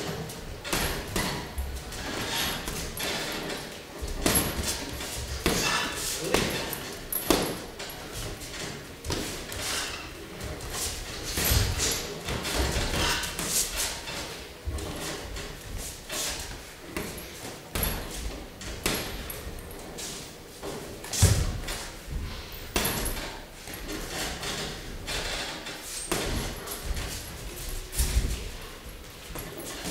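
Boxing gloves landing punches during sparring, with shuffling footwork on the ring canvas: irregular thuds and slaps, with one heavy thud about three-quarters of the way through.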